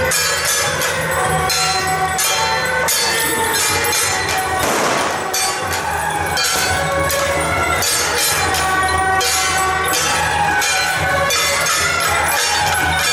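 Chinese temple-procession percussion: rapid, steady cymbal and gong strikes with ringing metallic tones. A brief rushing noise swells and fades near the middle.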